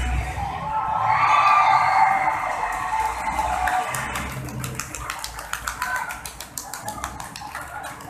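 Idol pop song on the stage's PA system playing its final bars, loud and full. About halfway through, the music drops back and a string of sharp claps from the hall takes over.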